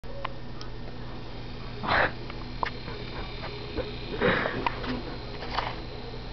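Two short breathy puffs from a person close to the microphone, about two seconds and four seconds in, over a steady low hum.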